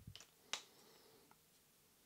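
Near silence with one short, sharp click about half a second in and a small tick a little after a second: slight handling noises at a fly-tying bench.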